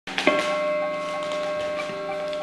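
Amplified electric guitar chord struck about a quarter second in and left ringing, its notes sustaining steadily through the effects rig.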